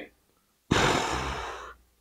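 A man's sigh: one breathy exhale about a second long that starts strong and fades out.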